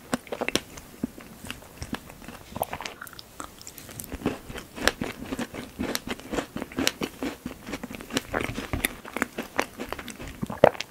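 Close-miked chewing of a strawberry tart with a pastry crust: a steady run of sharp clicks and crunches, thickest in the second half.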